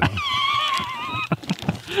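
A man laughing in a high, whinny-like pitch: one long wavering note that trembles as it fades, followed by short breathy chuckles.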